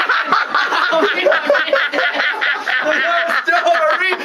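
A man laughing hard, in quick repeated chuckles that break up his singing.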